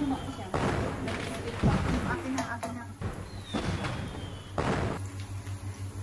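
Fireworks sound effect: whistles falling in pitch and several bangs about a second apart.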